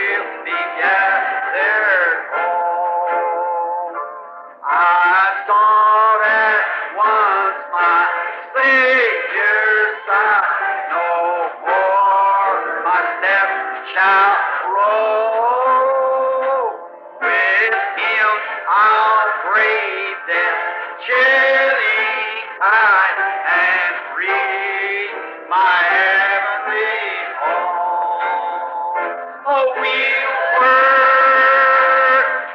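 Voices singing a hymn on an old sermon tape recording, thin-sounding with no bass, with short breaks between phrases about four seconds in and again near seventeen seconds.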